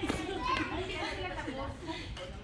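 Children and adults talking and calling out, echoing in a large sports hall, with one sharp badminton racket hit on a shuttlecock right at the start.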